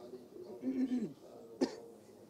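A man's short voiced sound falling in pitch, like a throat being cleared, then one sharp cough about a second and a half in.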